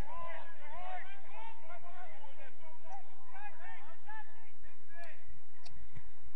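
Faint, distant shouts and calls of footballers on the pitch during play: many short rising-and-falling calls over a steady background hiss.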